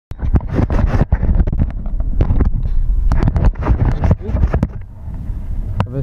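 Irregular knocks, bumps and rustling from a helmet-mounted camera being handled and moved, with low rumbling underneath.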